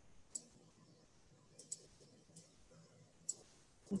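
Faint room hiss with about five soft, sharp clicks scattered through it.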